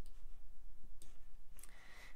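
A few faint computer mouse clicks over a steady low electrical hum.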